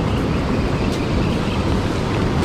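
Steady rushing of fast river rapids churning below a low dam.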